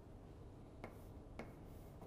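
Two faint sharp taps of chalk striking a blackboard, about half a second apart, as brackets are written.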